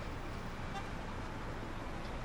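Steady street traffic ambience: a constant hum of road noise.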